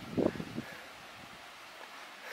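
Light wind and outdoor air noise, with one short low sound about a quarter second in.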